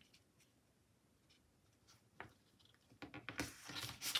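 Near silence, with a single faint tap a little after halfway and light handling of paper sticker sheets on a tabletop near the end.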